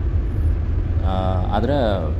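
Steady low rumble of a car's engine and tyres on the road, heard from inside the cabin while driving. A person's voice comes in about halfway through.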